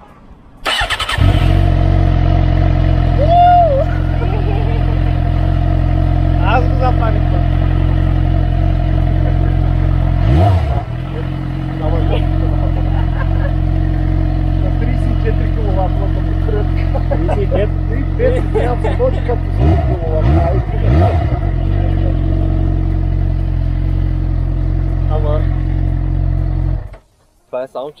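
A motor starts abruptly about a second in and runs with a loud, steady, even hum. It dips briefly a few times and cuts off suddenly near the end.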